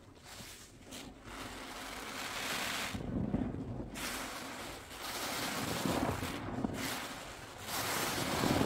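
A large soaked sponge is squeezed by rubber-gloved hands in thick soapy foam, giving a wet squelching and crackling of suds. It comes in several slow swells, each a second or two long, growing louder after the first couple of seconds.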